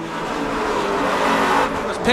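Race cars at speed with tyres squealing and skidding as a car loses grip and spins. The noise swells and then falls away near the end.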